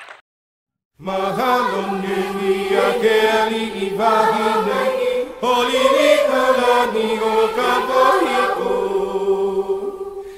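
About a second of silence, then a recorded vocal chant with long, gliding held notes over a steady drone, the backing music for a dance number. It fades near the end.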